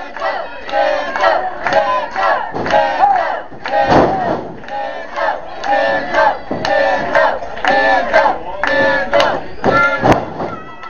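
Wrestling crowd in a small hall yelling and shouting, one voice after another, about one to two shouts a second. There is a single thump about four seconds in, as of a body hitting the ring mat.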